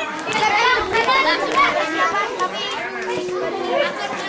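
Many children's voices talking and calling over one another at once: the lively chatter of a crowd of schoolchildren.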